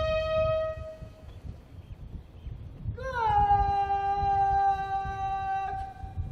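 A military bugle plays a slow ceremonial call of long held notes during a salute. One note fades out about a second in, and after a pause a second note starts about three seconds in with a slight downward bend and is held almost to the end.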